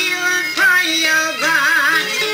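Albanian folk song: a singing voice holding notes over instrumental accompaniment, with a held note wavering in a wide vibrato near the end.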